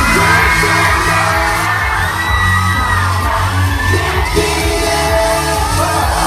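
Live pop music played loud through a club sound system, with a steady bass beat and singers on microphones, and a crowd whooping and yelling along.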